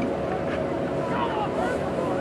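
Wind rumbling on the microphone, with indistinct distant voices calling out.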